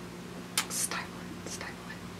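A woman's stifled giggles: a few short breathy puffs of air, a cluster about half a second in and another at about a second and a half, as she tries to hold back a laughing fit.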